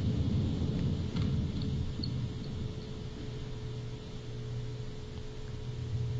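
Low steady background rumble and hum, with a faint steady tone above it.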